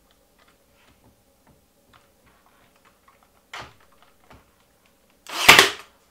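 Ryobi cordless 18-gauge brad nailer firing a brad into MDF: one loud shot lasting about half a second near the end, after a fainter knock about three and a half seconds in.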